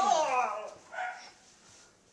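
A high yelping cry that slides down in pitch over about half a second, then a short, fainter cry about a second in.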